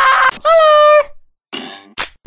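A cartoon character's high-pitched scream, in two held yells. The second is a steady pitch lasting about half a second.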